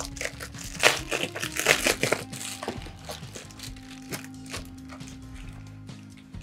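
Foil-lined bubble-wrap thermal pouch crinkling as it is pulled open by hand. The crackling is densest in the first three seconds and sparse after that, with background music running underneath.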